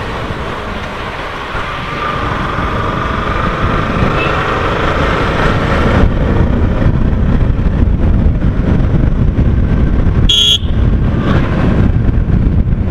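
Wind and road noise from a Yamaha R15 V3 motorcycle on the move, getting louder as the bike speeds up. About ten seconds in, the bike's horn gives one short, sharp beep, which carries even inside the rider's helmet.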